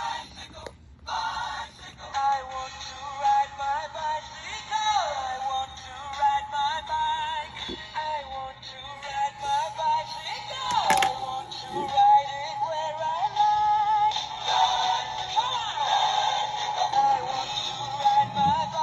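Battery-powered plush bunny-on-a-tricycle toy playing an electronic song with singing through its small built-in speaker, its batteries low. The melody wavers and swoops down in pitch in places.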